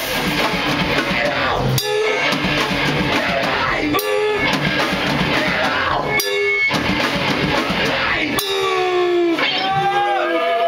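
Loud live powerviolence from a drum kit and electric guitar, played in stop-start bursts with short breaks about every two seconds. About eight and a half seconds in, the heavy playing drops out.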